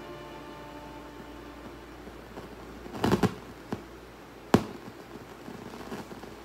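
Music tails off in the first second, leaving a quiet room. About three seconds in comes a quick cluster of knocks, then a small tap and a single sharp click about a second and a half later.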